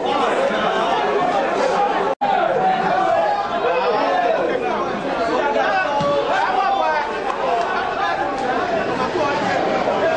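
Many voices talking and calling over one another in an unintelligible babble, at a steady level. The sound cuts out completely for an instant about two seconds in.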